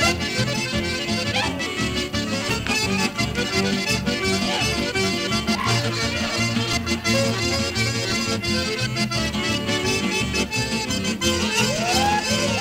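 Lively instrumental string-band music with a steady, repeating bass beat.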